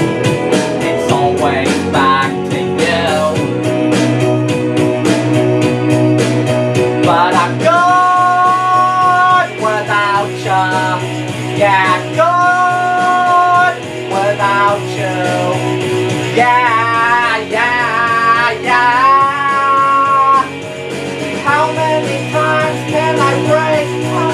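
A man singing a rock song over a karaoke backing track with guitar, bass and drums. He holds long notes with vibrato in several phrases.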